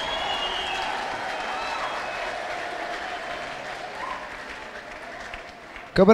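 Large congregation applauding, the clapping slowly dying away toward the end, with a few voices calling out over it.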